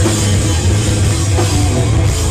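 Rock band playing live and loud: electric guitar over a drum kit, with no break.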